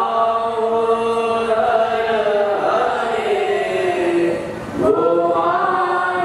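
A group of young male voices chanting a Hindu devotional hymn of praise (stuti) in unison, holding long melodic notes. The phrase breaks off for a brief breath about four and a half seconds in, and the next phrase starts together.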